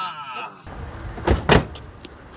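Two car doors slamming shut in quick succession, about a quarter of a second apart, over outdoor traffic noise.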